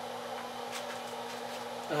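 A steady low electrical hum with a faint hiss beneath it, the idle running noise of powered-up ham radio equipment.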